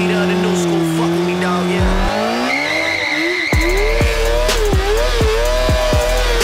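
A stock 2014 Kawasaki Ninja ZX-6R's 636 cc inline-four engine held at high revs during a burnout, the rear tyre squealing as it spins on the pavement, with a music track playing over it.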